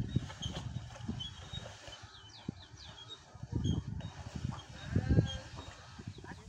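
Outdoor ambience: birds making short, repeated chirps, with gusts of wind buffeting the microphone.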